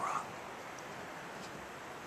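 Quiet, steady room hiss, opening with a short voiced sound in the first moment.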